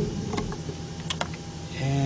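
A handful of light, sharp clicks and taps as scope test-lead clips are handled in an engine bay to get a good connection, over a steady low hum.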